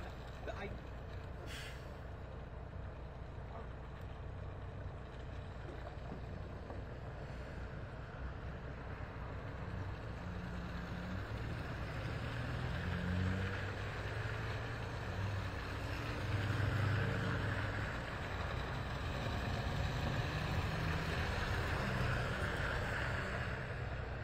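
Highway traffic passing slowly on a slushy, snow-covered road: engine rumble and tyre noise on wet snow, growing louder in the second half as trucks and pickups go by.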